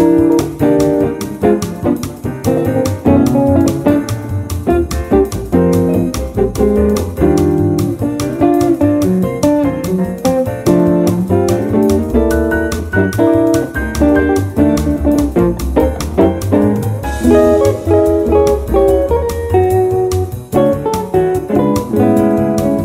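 1950 Gibson ES-150 archtop electric guitar playing a fast, up-tempo swing jazz line, with a low bass line and a quick steady beat underneath.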